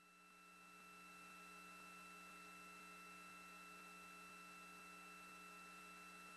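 Near silence: a faint, steady electrical hum with light hiss on the audio line.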